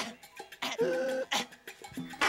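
Langur monkey alarm call: about three short, harsh, cough-like barks, the middle one drawn out.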